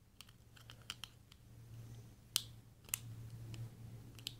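Faint small clicks and taps of hands handling a small plastic flashlight case, its wires and a small screwdriver, with two sharper clicks a little past halfway.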